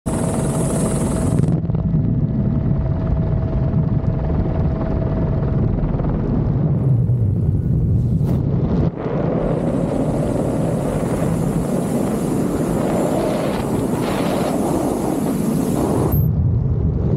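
Loud, steady roar of air: helicopter noise at the open door, then wind rushing over the microphone in wingsuit flight. There is a thin high whine at the start and again in the second half, and a brief dip in level just before nine seconds.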